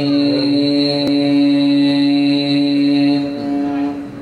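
Quran recitation (tilawat): a qari's voice, amplified through a microphone, holds one long steady note and releases it about three seconds in.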